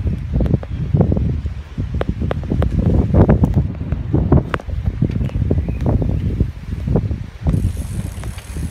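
Wind buffeting the microphone in uneven low gusts while riding a bicycle, with scattered sharp clicks and rattles from the bike.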